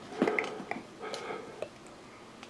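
Faint clicks of pink plastic toy scissors being snapped shut on a finger, with a short soft vocal sound about a quarter second in.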